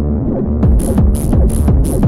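Fast freetekno track from a vinyl DJ mix: a pounding kick drum over deep bass, muffled at first, then the high end opens up and crisp hi-hats come in about half a second in.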